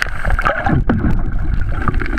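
Water churning and gurgling around a camera held just under the surface, with a steady low rumble and many small clicks and knocks.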